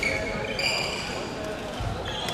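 Badminton hall sounds: sneakers squeaking in short high chirps on the wooden court floor, over a background murmur of voices in the large hall.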